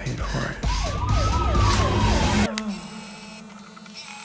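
Film trailer soundtrack: a loud, dense passage with a rapidly wavering siren-like wail, cut off sharply about two and a half seconds in, leaving a quiet low held tone.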